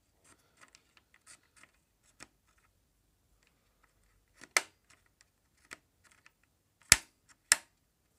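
Input-selector push buttons on a Unitra WS 330 stereo amplifier being pressed: a run of faint clicks, then four sharper clicks in the second half. The buttons are not locking in, which the owner puts down to the control needing grease.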